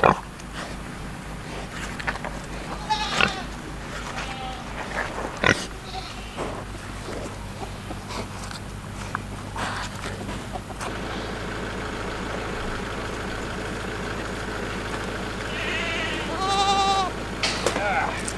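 Pigs chewing and crunching watermelon, a run of wet clicks and crunches through the first half. Then, near the end, goats bleat, with one loud, long bleat.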